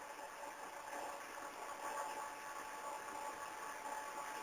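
Faint steady hiss of background line noise, with a few faint steady tones under it.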